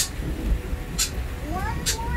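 A fox gives one short rising whine about one and a half seconds in. A few sharp clicks come from the plastic pet kennels being handled.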